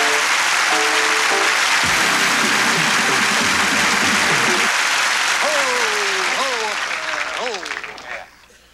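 Studio audience applauding over band play-off music with held notes; the music stops about five seconds in, and a few voices call out over the applause near the end.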